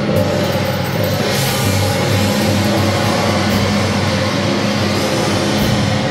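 Taiwanese temple-procession percussion, with a large gong, drums and hand cymbals, playing continuously at a steady, loud level.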